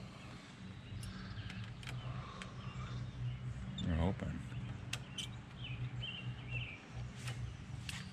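Quiet outdoor background with a low steady hum and a few sharp small clicks as the handlebar switch housing and parts are handled, faint bird chirps, and a brief voice about four seconds in.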